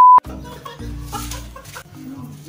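A censor bleep, a steady loud high beep, cuts off just after the start, followed by a quieter edited-in comic sound effect.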